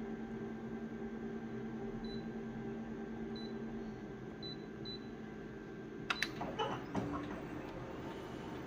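Office multifunction copier humming while its touch panel gives short high beeps as settings are tapped. About six seconds in, sharp clicks and a burst of mechanical noise as the copy job starts and the machine begins scanning the original.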